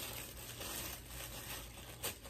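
Tissue paper rustling and crinkling softly as it is pulled apart by hand, tearing as it comes open.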